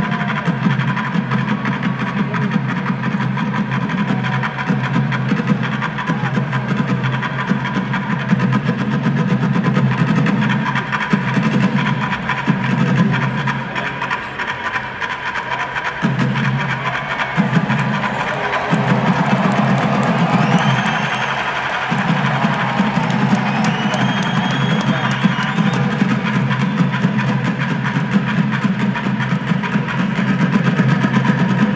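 A group of bucket drummers beating upturned buckets with drumsticks in a fast, dense percussion routine.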